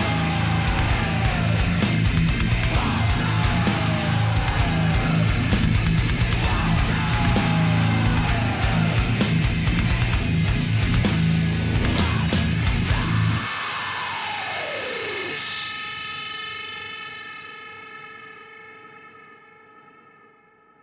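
Deathcore/hardcore band recording playing: heavily distorted guitars, bass and drums. About thirteen seconds in the band stops on a falling slide, and a held distorted guitar chord rings out and fades away toward silence.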